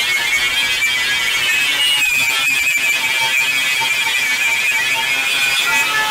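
Angle grinder with a wire brush running at a steady high whine as it scours old paint and rust off a steel plough disc, taking it back to bare steel.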